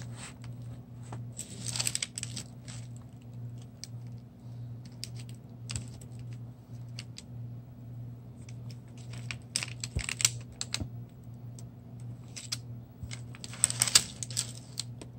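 A camera stand being adjusted by hand: irregular clicks and taps from its plastic clamp and metal pole, coming in clusters, over a steady low hum.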